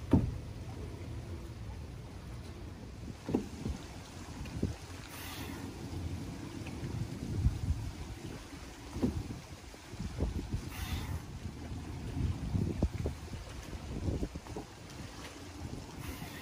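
Steady low rumble of wind on the microphone, with irregular dull thumps of bare feet landing and stepping on an exercise mat over a wooden dock; the loudest thump comes right at the start.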